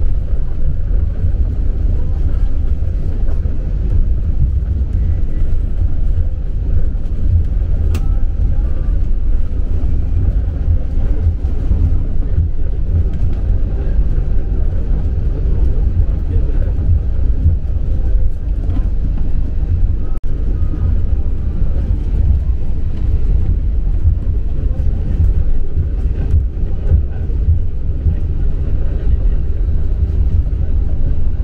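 Airliner cabin noise while taxiing after landing: a steady low rumble from the engines and the rolling aircraft, with one sharp click about eight seconds in.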